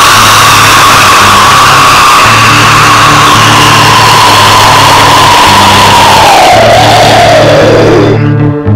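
Heavily distorted extreme metal music: a loud, dense wall of distortion with a held high note that slides down in pitch over the last two seconds, over a steady pattern of low sustained notes.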